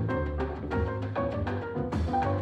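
Instrumental passage of a Brazilian MPB trio: piano playing chords and runs over a bass line and a steady pattern of drum strokes.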